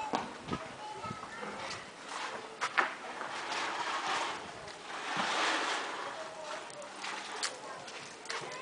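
Footsteps scuffing on a dirt path and rustling noise as someone walks under garden foliage, with faint voices in the background.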